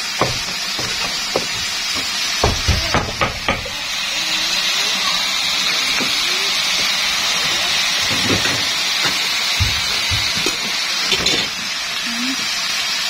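A cleaver knocking on a chopping board as it chops leafy greens, a few separate strikes in the first few seconds, then steady sizzling from about four seconds in as pieces of eel stir-fry in a hot wok.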